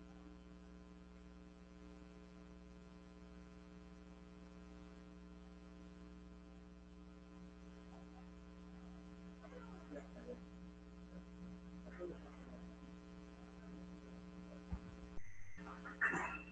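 Faint, steady electrical mains hum with a buzzy stack of overtones. In the second half come a few faint, indistinct sounds, and near the end a brief dropout and a short knock.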